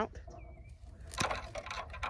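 Hand pruning shears snipping through a thin peach tree branch: one sharp click a little over a second in, with faint rustling of the branch.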